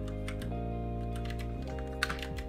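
Typing on a computer keyboard: a quick, irregular run of keystrokes over background music with held notes.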